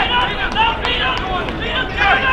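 Men shouting and calling out across an outdoor football pitch during open play, several voices overlapping.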